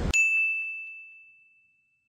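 A single bright, bell-like ding sound effect, struck once and ringing out as it fades over about a second and a half.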